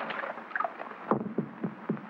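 A brief noisy splash-like burst, then from about a second in a drum beating steadily, about four beats a second, each beat dropping in pitch.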